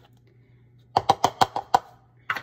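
About six quick, sharp knocks against the mixer-grinder jar, packed into under a second, as the jar holding the freshly ground sesame crumble is handled and checked.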